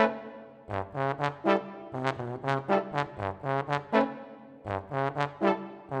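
A brass choir of French horns and trombones playing a pulsing line of short repeated chords, about four a second, that breaks off twice into a brief fading ring: once at the start and once about four seconds in.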